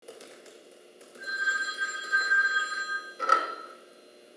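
Mobile phone ringing: a steady electronic ring of about two seconds, then a knock and a brief, cut-off burst of ring just after three seconds in, as the phone is picked up to answer.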